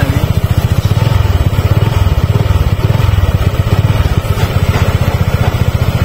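Honda Vario 160 scooter's single-cylinder engine idling at the exhaust muffler, a steady, even low pulsing.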